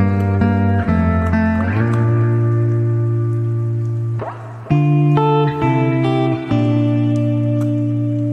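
Background music with guitar: held chords that change every second or so, with a short break about four seconds in.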